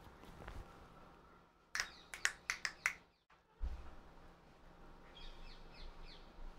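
A quick run of about six sharp clicks, then a single low thump about a second later. Faint high chirps follow near the end.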